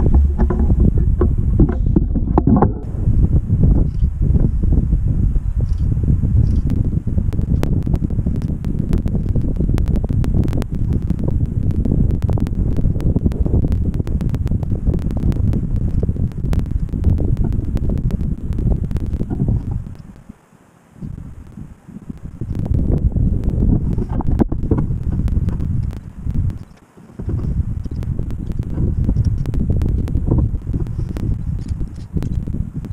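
Wind buffeting the camera's microphone, a loud, gusty rumble with scattered crackling clicks, easing off briefly twice in the later part.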